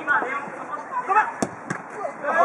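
Two sharp knocks of a futsal ball being struck, about a quarter second apart, after short shouts from players.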